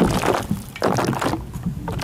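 Water pouring and splashing onto a plastic-wrapped microphone in uneven gushes. It breaks off briefly about half a second in and again near the end.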